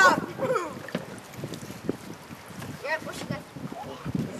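Short bits of people's voices calling out, near the start and again about three seconds in, over wind noise on the microphone.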